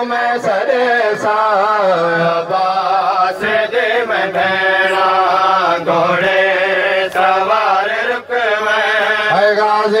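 A man singing a noha, a Shia lament of Muharram, into a microphone: a solo voice in long, wavering, ornamented phrases, with only brief breaks for breath.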